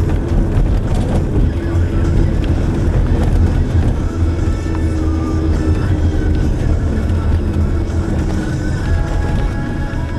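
Steady low rumble of a moving car, engine and road noise heard from inside the cabin.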